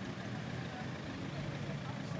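Quiet outdoor background in a pause between speech: a steady low rumble with faint distant voices.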